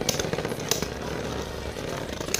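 Two Beyblade Burst spinning tops whirring against a plastic stadium floor, with a few sharp clicks as they strike each other.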